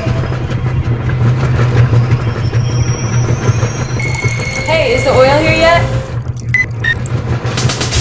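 A layered soundtrack: a steady low drone with thin high tones drifting in and out, and a brief voice sliding in pitch about five seconds in.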